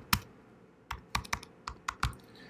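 Computer keyboard being typed on: a single keystroke shortly after the start, then a quick run of about seven key clicks in the second second as a word is typed out.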